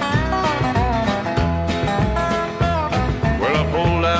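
Guitar-led country band music over bass and a steady beat, with a man's singing voice coming in near the end.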